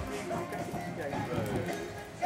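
Indistinct voices talking, mixed with background music.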